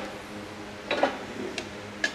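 A light knock about a second in and a fainter tick later, from steel gym rack parts being handled, over a steady low hum.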